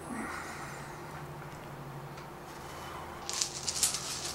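Dice rattling in a cloth dice bag as a hand rummages to draw an order die: quiet at first, then a quick clatter of small clicks for the last second or so, over a faint steady room hum.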